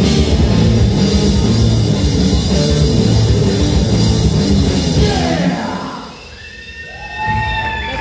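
Live rock band with electric guitars, bass and drum kit playing loudly, then breaking off about five and a half seconds in and dying away as the song ends. Voices come in near the end.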